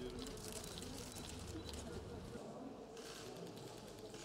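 Faint background voices and ambient noise at low level, with no clear single sound; the background changes about two and a half seconds in.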